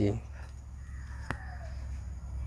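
A single light click as a plastic set square is laid on the drawing sheet, with a faint bird call in the background over a steady low hum.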